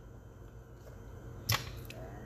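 A pause in speech: a steady low room hum, broken once by a short sharp click about one and a half seconds in.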